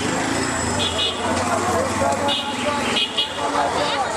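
Busy street sound: many voices chattering over traffic noise, with several short high-pitched toots.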